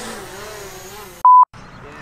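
A short, loud electronic beep: a single pure tone around 1 kHz, lasting about a fifth of a second and starting and stopping abruptly inside a moment of dead silence, a bleep edited in at a cut between clips. Before it there is only faint background sound.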